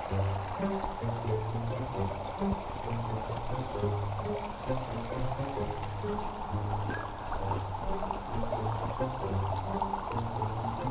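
Background music carried by a bass line of held notes that change about every half second, laid over the steady rush of a rocky forest stream.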